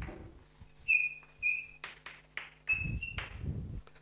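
Chalk writing on a blackboard: short, high-pitched squeaks of the chalk, two about a second in and another near three seconds, amid the taps and scratches of the strokes.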